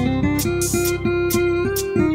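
Live band playing an instrumental passage: a plucked, guitar-like melody of short stepping notes over a steady low backing, with crisp high percussion strokes keeping the beat.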